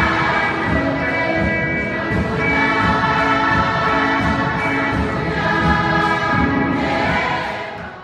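Children's choir singing in harmony with long, held notes, in a large echoing church hall. The singing fades out near the end.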